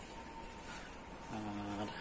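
Faint, high-pitched insect buzzing that pulses a few times a second, with a man's short hummed "hmm" about a second and a half in.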